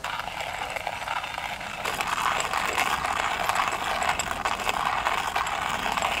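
Hand coffee grinder being cranked, its burrs crunching coffee beans in a fast, continuous grating; it gets louder about two seconds in.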